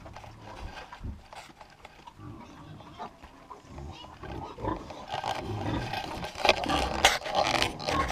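Piglets grunting close to the microphone, with straw rustling and knocks as they nose and bump the camera. The sounds get busier and louder in the second half, with sharp knocks near the end.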